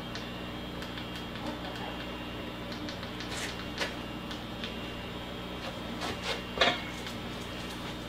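A steady low hum with a few light clicks, a couple about halfway through and two louder ones near the two-thirds mark.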